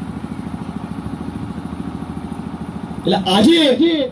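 A small engine running steadily with a rapid, even pulse. A man's voice through a microphone comes in near the end.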